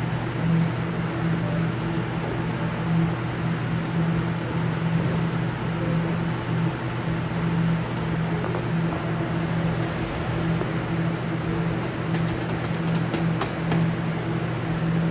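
Steady mechanical hum and rushing air of lab ventilation fans, with a low tone that wavers in strength. A few faint clicks come near the end.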